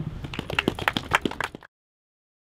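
A small crowd clapping, many separate hand claps, cut off abruptly about one and a half seconds in.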